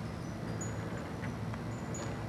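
Quiet outdoor background: a steady low hum with a few faint, short high-pitched ticks and chirps.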